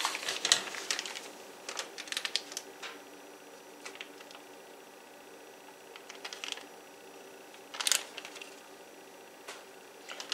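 Scattered light clicks and taps from pats of butter being cut from a paper-wrapped stick and set onto a cake in a glass baking dish, with a louder click about eight seconds in. A faint steady hum runs underneath.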